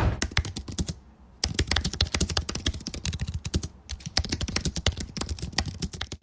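Rapid typing on a computer keyboard: a quick run of key clicks, broken by two short pauses, one about a second in and one a little past halfway.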